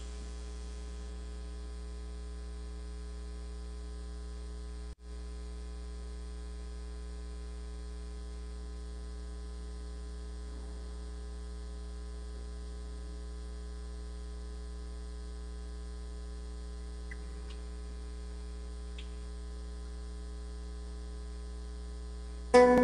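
Steady electrical mains hum in the audio feed, with a brief dropout about five seconds in.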